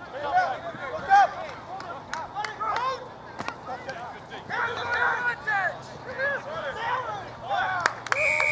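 Rugby players shouting short calls to one another across the field during play, several voices overlapping in quick, wordless bursts.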